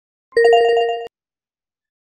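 Short electronic chime from an intro jingle: a bright, ringtone-like chord of steady tones with a fast flutter. It lasts under a second and cuts off abruptly.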